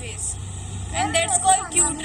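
A young woman talking, mostly in the second half, over a low steady rumble.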